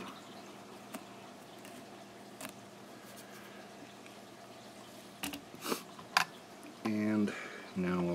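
Mostly quiet room tone with a steady low hum, broken by a few faint clicks and taps of fly-tying tools and materials being handled at the vise. A few spoken words come in near the end.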